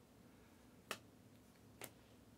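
Two short, sharp clicks about a second apart as trading cards are flicked off a stack by hand, otherwise near silence.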